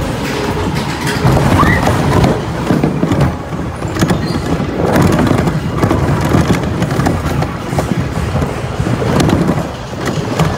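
Space Mountain roller coaster train running along its steel track: a loud, continuous rumble and clatter of the wheels that swells and eases through the turns and drops, with frequent sharp clacks from the track.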